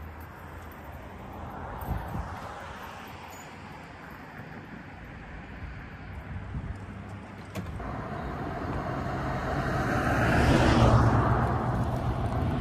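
A car passing by on the street, its tyre and engine noise swelling to a peak about eleven seconds in and then easing, with a fainter vehicle pass about two seconds in.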